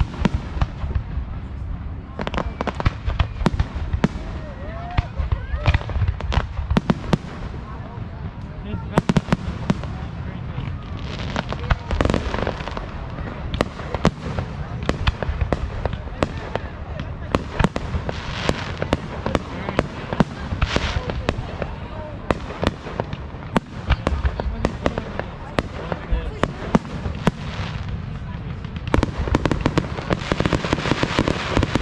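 Aerial fireworks shells bursting one after another, a steady run of sharp bangs, several a second at times.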